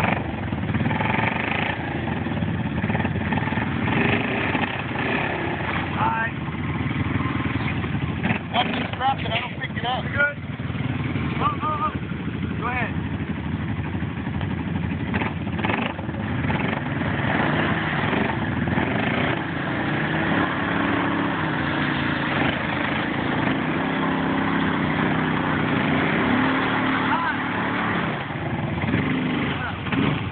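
ATV engines running under load as one four-wheeler tows a stuck quad out of the mud on a tow strap. The engine pitch steps up and down in the second half.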